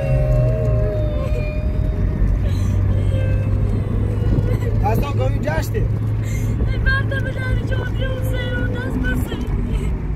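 Peugeot car driving, heard from inside the cabin: a steady low drone of engine and road noise.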